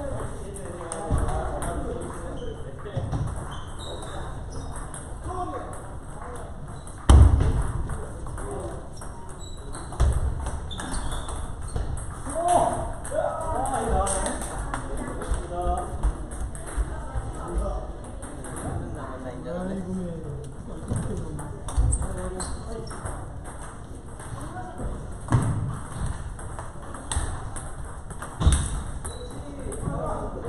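Table tennis balls clicking off bats and tables in quick rallies, with a loud thump about seven seconds in.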